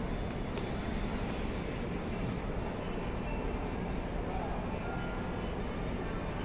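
Steady background noise of an indoor shopping mall: a low, even hum with faint voices of passing shoppers mixed in.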